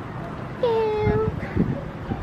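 A single drawn-out animal cry with a slightly falling pitch, starting a little over half a second in and lasting under a second, over steady low outdoor background noise.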